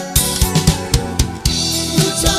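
Band music at a rehearsal: a drum kit plays kick, snare and cymbal hits over a bass line and sustained instrument chords, with a cymbal crash at the start.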